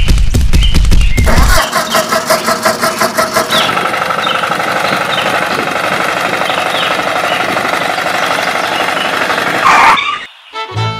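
A walking-tractor engine starting: rapid low putting for about the first second and a half, then a steadier, higher-pitched running sound.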